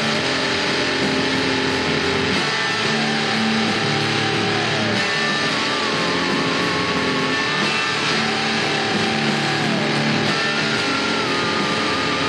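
Telecaster-style electric guitar playing a loud, steady heavy rock riff, with held notes that bend and waver in pitch.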